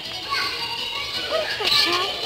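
Children's voices calling and shouting as they play, over music playing in the background.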